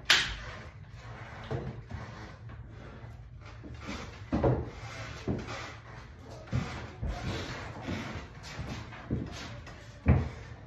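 A person moving about on a concrete floor: scattered footsteps and short knocks, with a sharp loud knock right at the start and another just at the end.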